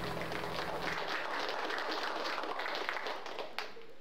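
Church congregation applauding at the end of a song, with the grand piano's last notes dying away during the first second. The clapping thins out near the end to a few last claps.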